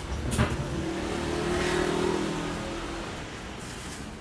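A motor vehicle's engine passing by, swelling to a peak about two seconds in and then fading away, over a steady low rumble. There is a sharp knock about half a second in.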